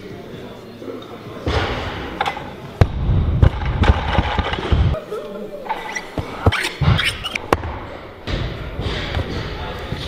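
Barbell and bumper-plate thuds on a lifting platform, with sharp metal clinks and knocks as plates are handled a little past halfway, heard against voices echoing in a large hall.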